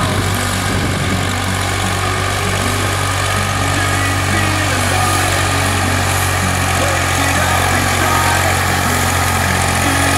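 Massey Ferguson tractor's diesel engine running steadily under load while pulling a tillage implement through stubble, with a constant low drone.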